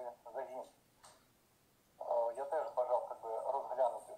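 Speech only: a man talking in a thin, narrow, telephone-like voice, with a pause of about a second in the middle.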